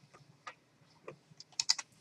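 A few faint, irregular clicks from computer input at a desk, with a louder group of clicks near the end.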